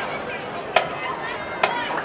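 Crowd chatter from the stands, cut by two sharp wooden clicks about a second apart: a count-off just before the marching band starts playing.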